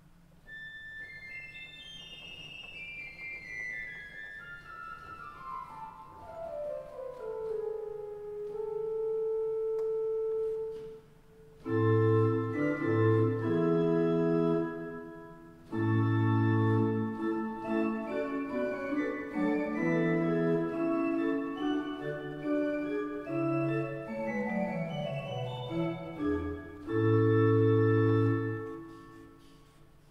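Romantic pipe organ (Gustav Heinze, opus 100) played on its flute stops, 8- and 4-foot flutes with a 2-foot piccolo flute added. A fast descending run comes down from the top into a held note, then louder chords with deep pedal bass notes follow, ending on a held chord.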